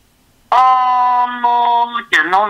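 After a brief pause, a singing voice holds one long, steady note for about a second and a half, with a slight shift in tone near the end.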